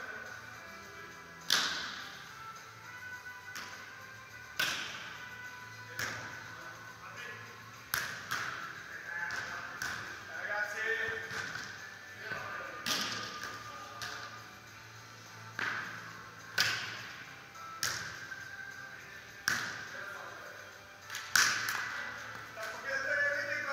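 Volleyballs struck hard again and again, serves and forearm passes in a serve-receive drill, each a sharp slap that echoes around a large indoor hall, about a dozen at uneven intervals of one to three seconds. Faint music and voices carry on underneath.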